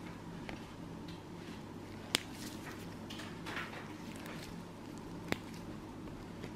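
Toenail nippers cutting a thick, fungus-infected toenail: two sharp snips about three seconds apart, with faint scratchy sounds between.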